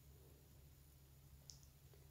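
Near silence with a steady low room hum, broken by one short, faint click about one and a half seconds in.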